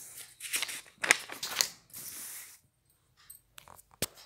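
Paper rustling as textbook pages are handled and turned: several short rustles in the first two and a half seconds, then near quiet with a few faint ticks.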